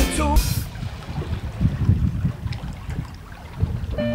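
A song with singing ends about half a second in. It gives way to the uneven, gusty low rumble of wind buffeting the microphone on the water, with a faint hiss.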